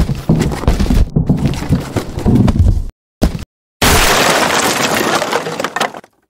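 Crashing and breaking sound effects: a rapid, uneven run of cracks and impacts, two brief dead-silent gaps, then a dense crash about two seconds long that cuts off abruptly.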